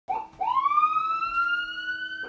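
Police car siren: a short blip, then a wail that rises in pitch and levels off into a held tone.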